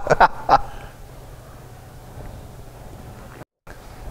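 Men laughing heartily in a few short bursts in the first half second, then a low room hush. About three and a half seconds in, the sound cuts briefly to total silence.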